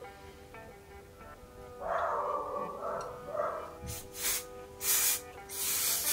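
Background music playing steadily; from about four seconds in, several short hisses of an aerosol hair spray can, the last one longest.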